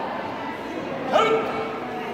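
A single short, sharp cry about a second in, rising then falling in pitch, over the murmur of voices in a large hall.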